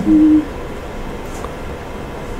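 A man's short, steady hum at one pitch, like a hesitating "mm", for under half a second, then a steady hiss of room noise through the microphone.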